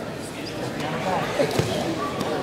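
Indistinct voices in a large, echoing gymnasium, with two sharp thumps close together about one and a half seconds in.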